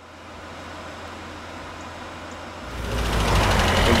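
Hindustan Ambassador car engine running, growing clearly louder about three seconds in.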